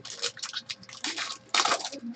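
Foil trading-card pack wrapper rustling and crinkling in the hands as the pack is torn open, with a louder crinkly burst about a second and a half in.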